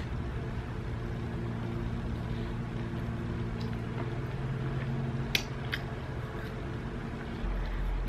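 A person chewing a mouthful of lobster roll, with a few soft mouth clicks about five seconds in. Under it runs a steady low hum that stops near the end.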